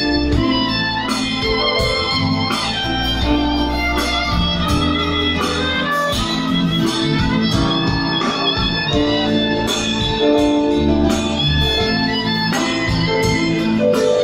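Live band playing an instrumental passage of a Turkish pop-rock song: strummed acoustic guitars over bass, drums and keyboard, at a steady level.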